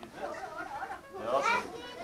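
Young children's voices chattering and talking in a room, with a high-pitched child's voice louder toward the end.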